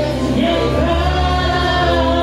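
Gospel worship singing by many voices, with instrumental accompaniment holding steady bass notes under the melody.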